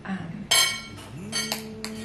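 Metal knitting needles clinking as a knitted piece is picked up: one sharp clink about a quarter of the way in, then two lighter clicks near the end.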